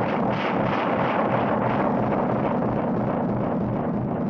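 Steady, loud rushing noise like the roar of surf or wind: a film sound effect for a man being deafened.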